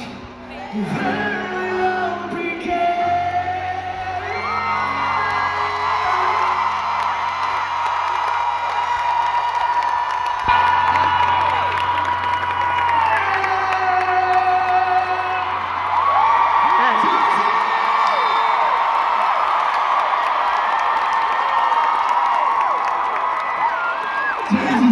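Live country-pop performance heard from the arena crowd: a male singer holds long, high sustained notes that step from pitch to pitch over a low held chord, which drops out about two-thirds of the way through. The crowd whoops and cheers throughout.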